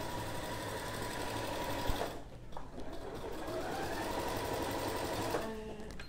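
Electric sewing machine stitching at speed, topstitching lingerie elastic with a zigzag stitch. It stops about two seconds in, starts again a second later with a rising whine as it speeds up, and stops near the end.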